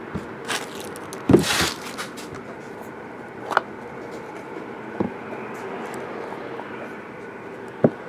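Hands handling a trading card box and its inner case: a short scrape about a second and a half in, then single knocks and clicks every second or two as the lid and case are lifted and set down on the table. A steady low hum runs underneath.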